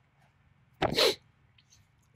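A man sneezes once, a short sharp burst about a second in.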